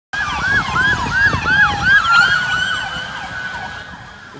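Police car sirens on a wet highway: one in a fast yelp of about four rising-and-falling sweeps a second, then a long steady tone, with a second siren sliding slowly down in pitch. The sirens fade toward the end over the rumble of traffic on the wet road.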